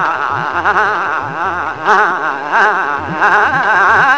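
Male Hindustani classical vocalist singing a rapidly wavering, heavily ornamented melodic line. Tabla accompanies him, the bayan's low strokes gliding upward in pitch beneath the voice.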